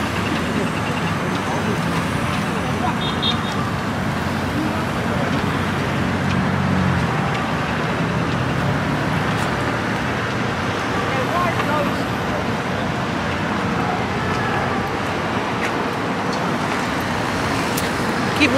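Steady city street traffic noise: cars running and passing on a busy road, a constant din.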